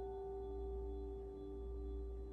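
Several struck bell tones ringing on and slowly fading, a low tone among them wavering in a slow pulse about twice a second.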